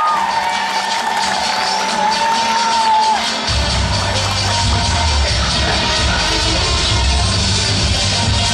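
Audience cheering and whooping with long, high held shouts, then music with a heavy bass beat starts about three and a half seconds in.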